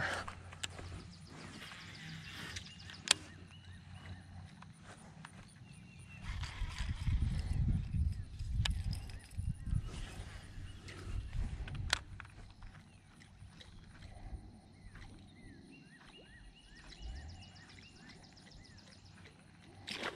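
Quiet outdoor ambience with a few sharp clicks, a stretch of low rumble in the middle, and faint repeated chirping calls near the end.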